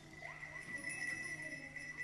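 A metallic instrument holding one steady high ringing tone, with a few faint higher overtones.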